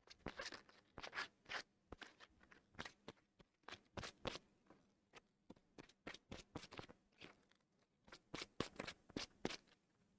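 Small wooden blocks rubbed and handled by hand: faint, irregular short scratchy strokes, with a quicker, more even run of strokes near the end.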